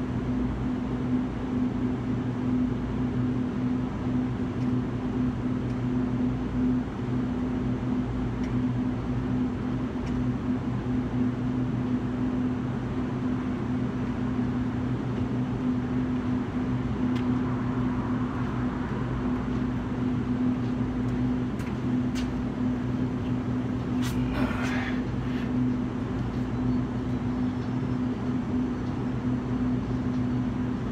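Steady low mechanical hum at a constant pitch, unchanging throughout. A few faint clicks and a short scuff about two thirds of the way through.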